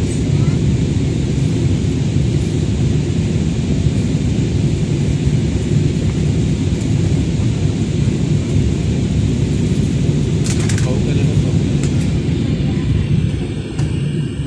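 Steady jet airliner cabin noise on descent, a deep rumble of engines and airflow with hiss above it, heard from a window seat. A couple of short clicks come about ten and a half and twelve seconds in.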